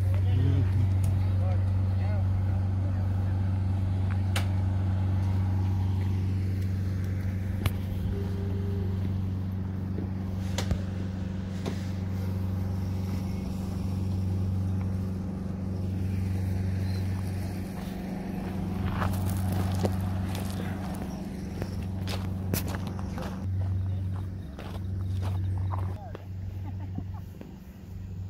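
Turboprop airliner's engine running on the apron, a steady low hum that grows somewhat fainter toward the end, with a few scattered clicks.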